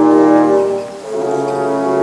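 Musical-theatre orchestral accompaniment playing held chords, which dip briefly and move to a new chord about a second in.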